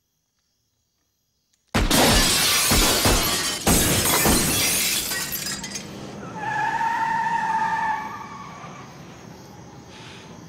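A sudden loud crash with glass shattering, breaking out of silence about two seconds in, with a second heavy hit about two seconds later, then dying away over several seconds. A brief steady tone sounds in the middle of the decay.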